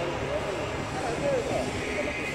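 Indistinct voices of people talking nearby, with no clear words, over a steady low outdoor rumble.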